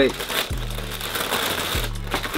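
Paper crinkling as sneakers are handled in their shoebox, over background music with deep bass notes that slide in pitch.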